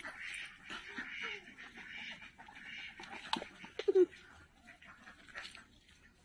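Ducks quacking in a run of raspy calls over the first three seconds, then a few sharp knocks and a short low call about four seconds in.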